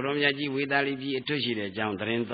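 A Buddhist monk preaching a sermon in Burmese, one man speaking steadily. The sound is thin, as from an old recording cut off in the high end.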